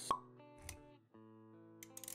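Intro sound effects over soft background music with held notes: a sharp pop just after the start, a dull thump about half a second later, a short gap around the one-second mark, then the music returns with quick clicks near the end.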